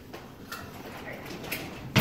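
Small clicks and knocks of kitchen items being handled, ending in a sharp, louder knock.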